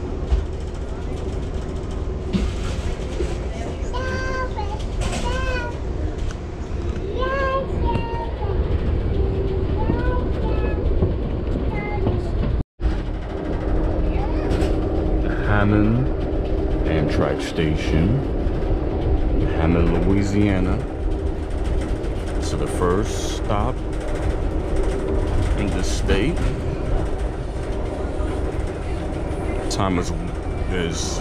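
Steady low rumble of a moving Amtrak passenger train heard from inside the coach, with other passengers' voices in the background. The sound cuts out for an instant a little before halfway.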